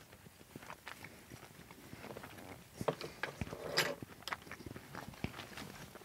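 Quiet close-up chewing of soft, oil-soaked dried tomatoes, with small wet mouth clicks scattered throughout and a brief soft sound a little past the middle.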